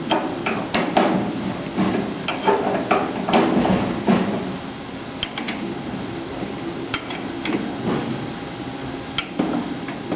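Metal clanks and clicks as the guide rollers of an Eagle CP60H roll bender are adjusted by hand with a tool: a busy run of knocks in the first four seconds or so, then a few single clicks.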